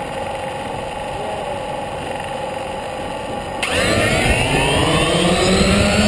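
DJI Phantom quadcopter's motors and propellers spinning at low speed on the ground, then throttling up sharply about three and a half seconds in, with a louder whine rising in pitch as it lifts off.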